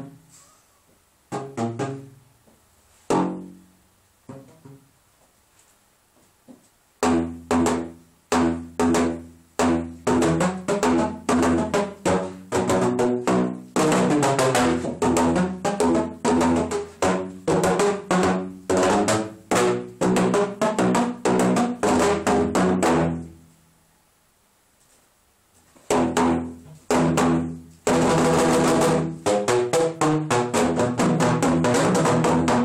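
PVC pipe instrument (a tubulum) played by striking the open pipe ends with flat paddles, each strike giving a hollow, pitched thump. A few scattered strikes come first, then from about seven seconds in a fast, steady run of notes. It stops for a couple of seconds and picks up again near the end.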